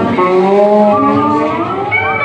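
Amplified live rock band playing, with several held notes that slide up and down in pitch.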